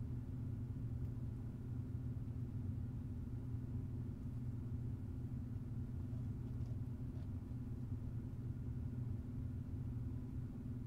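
Steady low background hum, even in level throughout, with nothing else standing out.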